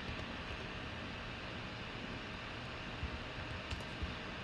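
Steady low background hiss of room tone, with a couple of faint clicks near the end.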